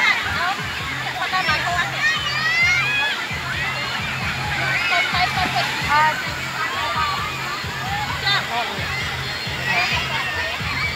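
Many children shouting and squealing together as they play in a wave pool, over the steady wash and splash of small breaking waves.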